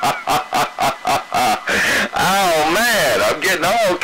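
Sound received over a CB radio: about two seconds of rapidly chopped, stuttering sound, then wavering voice-like calls whose pitch swings up and down.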